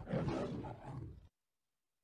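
A long, tremendous roar sound effect that fades and cuts off about a second in, followed by dead silence.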